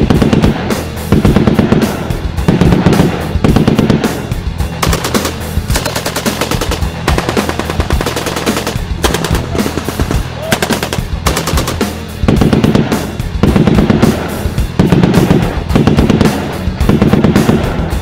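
Sound effects of automatic rifle fire: repeated bursts of rapid shots, close and loud.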